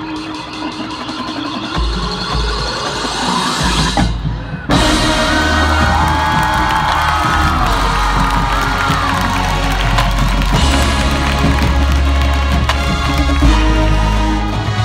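High school marching band playing: the sound rises over the first four seconds, drops out briefly just after four seconds, then comes back as a loud, full passage of brass and percussion over a heavy bass.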